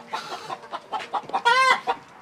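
Chicken clucking in a string of short clucks, then one loud squawk about one and a half seconds in.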